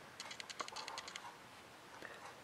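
A quick run of faint, light clicks for about a second from the camera's lens as it zooms and focuses.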